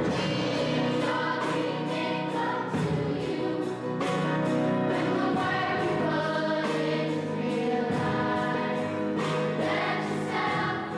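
Choir singing a gospel-style song with instrumental backing over a steady beat.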